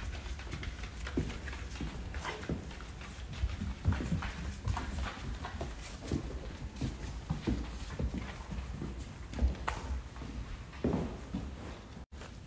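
Dogs' claws clicking and tapping irregularly on a hard floor as they walk about and play.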